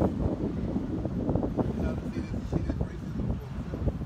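Wind buffeting the phone's microphone: a loud, uneven low rumble with gusty thumps.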